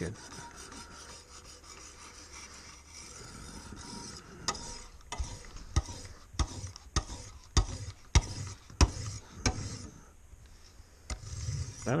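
Wicked Edge guided sharpener's hand-held paddles stroking along the edge of a clamped Japanese carbon-steel knife. Soft rubbing at first, then from about four seconds in a run of sharp clicks roughly every half second as the strokes go on.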